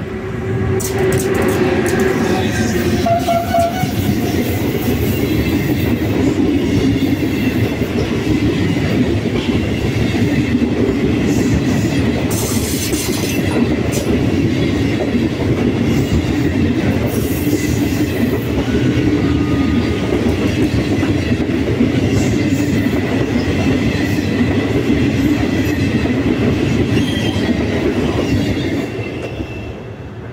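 Venice Simplon-Orient-Express train, two E402B electric locomotives hauling its Pullman coaches, passing close by. The wheels and coaches make a loud, steady rolling noise that builds within the first second and drops away about two seconds before the end.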